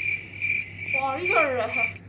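Cricket chirping in a steady rhythm, about three short high chirps a second.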